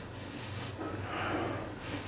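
Quiet drinking sounds of a man sipping beer straight from an aluminium can, with a soft airy swell about a second in.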